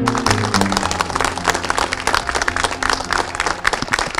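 A small crowd clapping, with many rapid, overlapping hand claps, over soft background music with held low notes.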